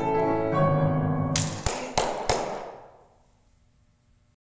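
Grand piano playing the closing bars of a pop-song cover: sustained chords, then four sharp, hard strikes about a third of a second apart that ring out and fade away to quiet.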